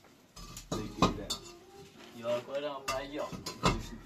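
Hollow fired-clay blocks knocking and clinking against each other and the brickwork as they are handled and set down: several sharp knocks, the loudest about a second in, with a voice speaking briefly between them.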